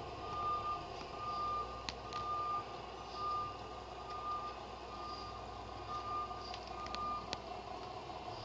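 Garbage truck's reversing alarm beeping at an even pace, about one beep a second, over the truck's engine running.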